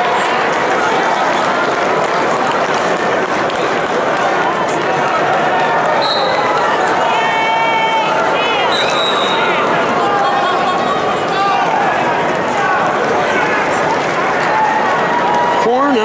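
Arena crowd hubbub, a dense, steady mix of many voices talking at once. A few short, high whistle-like tones sound about midway, one of them a fast trill.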